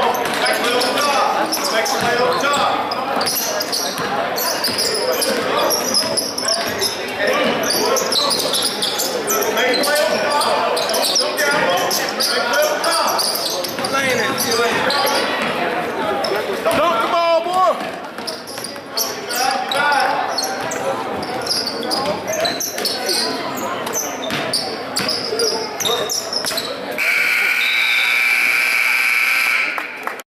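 Basketball bouncing on a gym's hardwood floor among many voices echoing in the hall. About three seconds before the end, the scoreboard horn sounds one steady, loud blast, signalling the end of the game.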